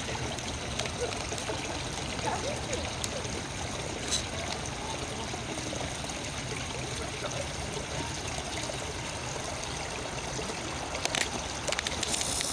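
Water trickling steadily in a stone basin where flower heads float. Faint voices sound in the background.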